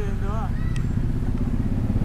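Pickup truck engine idling: a steady low rumble under a brief word of speech.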